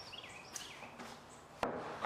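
Faint bird calls: several short, falling chirps in quick succession, then a single sharp knock about one and a half seconds in.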